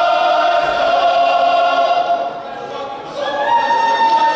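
Mixed choir singing long held chords. The sound drops away about two seconds in, and a new, higher chord comes in just after three seconds and is held.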